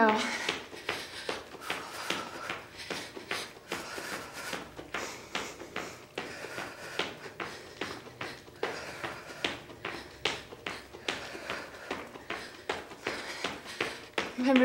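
Quick, rhythmic footfalls of a person jogging in place, doing butt kickers, in sneakers, several steps a second.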